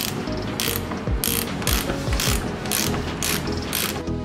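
Combination spanner working the nut of a car's front anti-roll bar link, giving a sharp metallic click about twice a second as it is swung back and forth.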